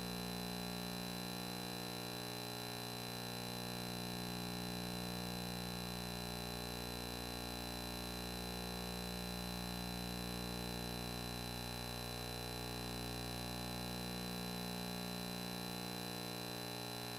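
Steady electrical hum with many unchanging tones and a thin high-pitched whine, without any change or distinct event.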